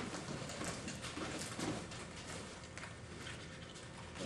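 Quiet room tone with faint, scattered soft footfalls and shuffling on padded floor mats.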